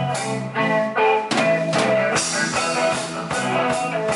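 Live rock band playing: electric bass guitar, electric guitar and drum kit together, with a steady bass line under regular drum hits.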